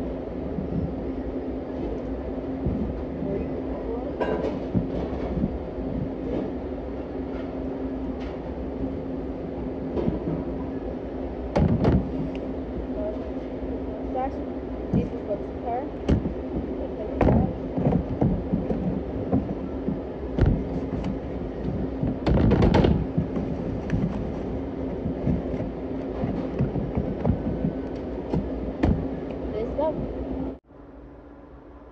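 Steady hum of commercial kitchen equipment with a constant low tone, broken by knocks and thumps as a pizza is cut with a rocker blade and handled on a steel counter; the loudest thumps come about 12, 17 and 23 seconds in.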